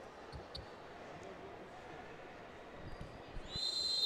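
Faint ambience of an indoor futsal arena during a stoppage: low hall noise with a few soft thuds. A thin high steady tone comes in near the end.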